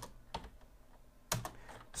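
Typing on a computer keyboard: a handful of separate keystrokes spaced unevenly, some a few tenths of a second apart, with a gap of nearly a second in the middle.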